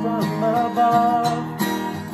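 Strummed steel-string acoustic guitar accompanying a young man's singing voice in a slow worship song, with one long held note near the middle.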